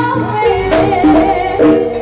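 Live Javanese gamelan music with a bending, wavering melodic line over sustained tones and regular kendang drum strokes.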